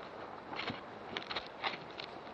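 Footsteps and brushing through dry leaf litter and undergrowth: scattered crackles and rustles over a steady outdoor hiss, a few sharper ones about halfway through.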